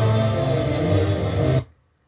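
Music from an FM station playing through a Kenwood R-SG7 tuner-amplifier and its speakers, cutting off suddenly about one and a half seconds in as the tuner is stepped off the station.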